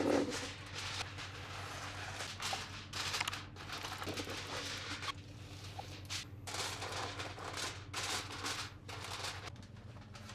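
Aluminum foil being pulled off a roll, torn and crinkled as it is pressed over disposable foil pans: a continuous crackling rustle with many sharp crinkles.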